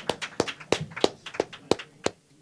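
Several camera shutters clicking in quick, irregular succession, about five or six clicks a second.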